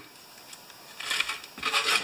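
Rubbing and rustling handling noise, a quiet moment and then irregular scraping rubs starting about a second in.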